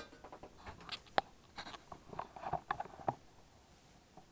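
Handling noise from a camera being picked up and repositioned: a run of irregular clicks, taps and rustles, loudest a sharp click a little over a second in, stopping about three seconds in.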